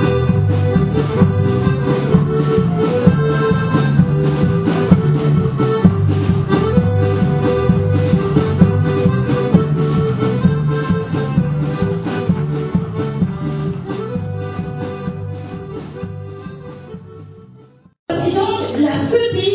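Traditional Bourbonnais folk dance tune led by accordion, played to a steady beat, fading out over the last few seconds.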